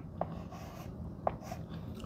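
Chalk writing on a blackboard: quiet strokes with a couple of short, light taps as numbers and dots are put down.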